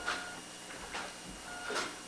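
Brief rustling and handling noises at the lectern, picked up close by the podium microphone, as one speaker hands over to the next: three short bursts, near the start, about a second in and near the end.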